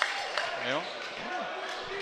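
A volleyball bounced on a wooden gym floor, with sharp knocks echoing in the hall, while a commentator's voice speaks softly over it.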